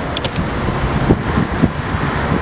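Wind rumbling on the microphone over steady city street and traffic noise, with a few low thumps from about a second in.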